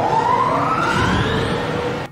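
A film soundtrack: a steady whine rising in pitch over low rumble and score, cutting off suddenly at the end.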